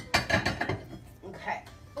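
Dishes and utensils knocking and clinking as a serving platter is handled, with a few sharp knocks in the first second and quieter handling after.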